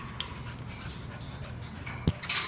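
A dog panting softly, with a few faint clicks.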